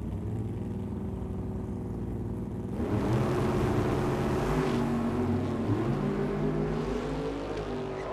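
Drag racing cars' engines running at the start line, then about three seconds in they rev up sharply and stay at full throttle, pitch climbing as the cars launch and accelerate away down the strip.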